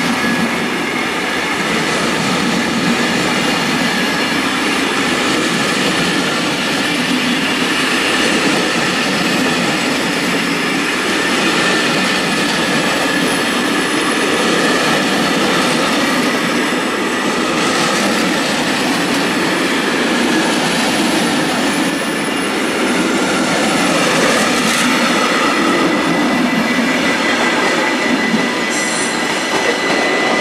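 Long passenger train of Belgian coaches rolling steadily past: the wheels run loud and continuous on the rails, with steady high-pitched squealing tones from the wheels.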